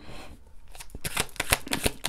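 A deck of tarot cards being shuffled: a quick run of crisp clicks that starts about half a second in.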